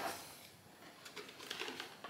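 Quiet clicks and rustles of a plastic RC car body shell being unclipped and lifted off its chassis, a few short ticks between one and two seconds in.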